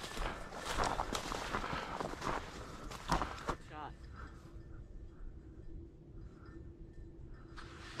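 Footsteps swishing and crunching through tall dry grass for the first three and a half seconds, then the walking stops and it goes quieter. A brief far-off voice comes about three and a half seconds in.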